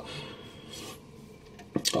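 Faint rubbing and scraping as hands pick up and turn a plastic action figure on a hard display surface, with a short click near the end.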